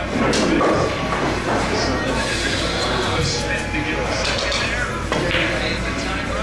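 Pool hall room sound: background chatter from onlookers mixed with music playing in the hall, with a faint knock about five seconds in.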